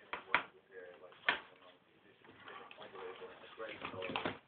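Two sharp knocks about a second apart, over faint talking in the room.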